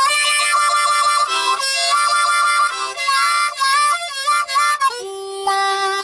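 A key-of-C diatonic blues harmonica playing a phrase of short, bent notes, with the hand fanning on and off the harp to give a wah-wah effect. It ends on a held chord.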